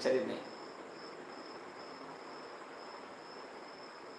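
A cricket trilling steadily in the background, a faint, thin, high-pitched chirping.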